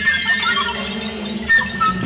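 Live flute playing short phrases that bend in pitch over a held low tone, as part of a small ensemble with percussion. There is a light percussive strike about one and a half seconds in.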